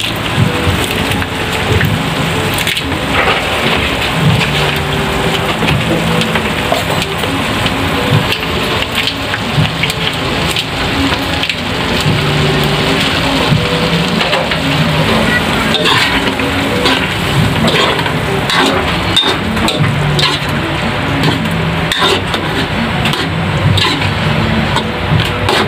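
Meat and tomato sauce sizzling and bubbling in a hot metal wok, a steady crackling hiss, with scattered clicks and scrapes of a spatula in the pan and a low hum that comes and goes.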